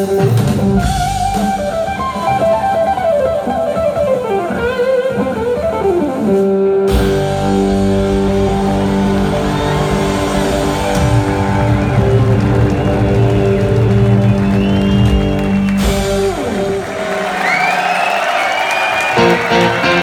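A live rock trio playing instrumental music: an electric guitar leads with held, bending notes over bass guitar and drum kit. The low end drops away shortly before the end.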